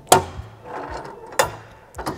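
Metal service door on a Kubota GL14000 generator's enclosure being unlatched and swung open: a sharp latch click just after the start and a second click about a second and a half in.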